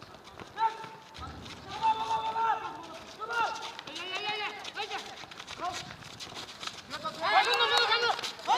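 Several men shouting and calling out to each other while playing football outdoors. The calls are short and scattered, with a louder burst of overlapping shouts near the end.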